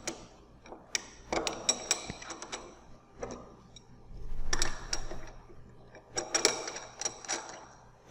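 Metal tie rods being fitted and turned on a triaxial cell to clamp its top to its base: a run of light metallic clicks and ticks in several clusters, with a longer scraping rub in the middle.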